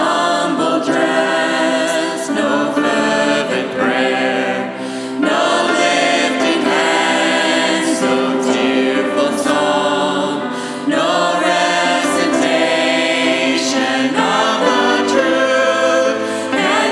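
Congregation and a small mixed vocal group on microphones singing a worship song together, accompanied by a grand piano. The singing runs in long phrases, with short breaks about five and eleven seconds in.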